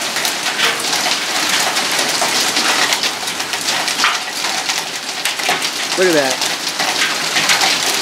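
Dime-sized hail coming down hard on solar panels and the yard: a dense, continuous clatter of countless small impacts, steady throughout.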